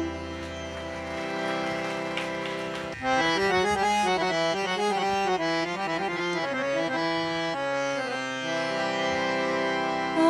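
Harmonium holding steady notes, then from about three seconds in playing a running melodic phrase of quickly changing notes.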